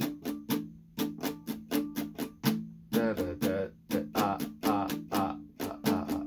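Acoustic guitar strummed in a steady rhythmic pattern, about four strums a second, through the chord progression of a beginner song lesson. A voice joins in over the strumming from about three seconds in.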